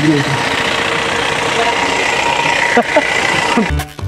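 Roadside traffic noise, a steady hum of vehicle engines, with a few brief voices. Rhythmic music with a beat cuts in near the end.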